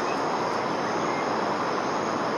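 A steady, even rushing noise with no rhythm or pitch, holding one level throughout.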